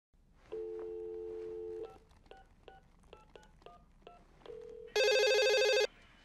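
Telephone call being placed: a steady dial tone for about a second, then a quick run of touch-tone keypad beeps dialing a number, then a phone ringing loudly for about a second near the end.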